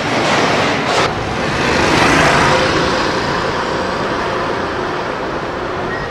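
A motor vehicle passing close by in the street, its noise swelling to a peak about two seconds in and then easing to a steady traffic noise.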